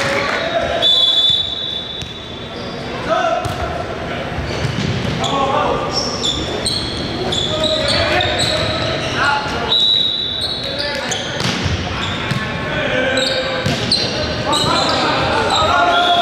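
Indoor volleyball in a large, echoing gym hall: players' voices calling out, the thumps of the ball being hit, and a few short high-pitched tones about a second in, ten seconds in, and again near the end.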